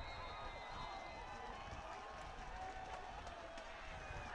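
Faint crowd noise from the stands at a football ground: a steady low murmur with distant voices.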